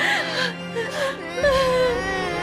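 A young child wailing and crying, the pitch wavering up and down, over background music with long held notes.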